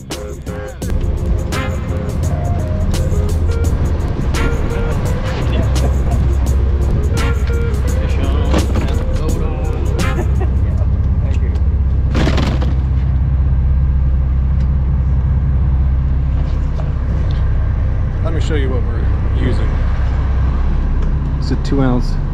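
Boat engine rumbling steadily. Background guitar music plays over roughly the first ten seconds, and faint voices come in near the end.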